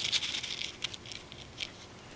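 Dry grains tipped out of a thimble and pattering onto a sheet of paper: a short rushing hiss as the bulk pours out, then a few single ticks as the last grains drop.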